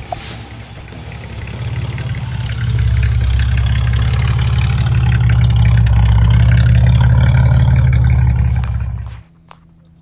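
Channel intro sound bed: a deep, steady low rumble with a click at the start. It builds over the first three seconds, holds loud, then fades out about nine seconds in.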